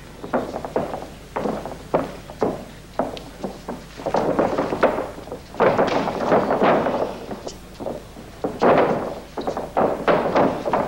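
Thuds and slaps of bare feet and strikes on a fight ring's canvas during a stand-up exchange, with crowd shouting swelling for a few seconds in the middle and again near the end.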